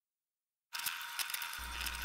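Silence, then, under a second in, small clicks and rattles of 3D-printed plastic parts being handled and fitted together by hand. A steady low hum joins near the end.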